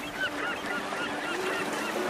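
Gulls calling: a quick, overlapping series of short, high calls, several a second.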